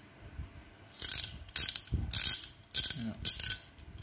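A KTC (Kyoto Tool) 1/2-inch drive ratchet handle swung back and forth, its pawl clicking rapidly over the gear on each return stroke. The bursts start about a second in and repeat about twice a second.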